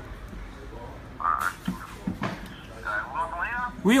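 A man's voice coming through a mobile phone's loudspeaker, thin and tinny, starting about a second in, over a low room murmur; near the end a man nearby answers "oui" in a fuller, louder voice.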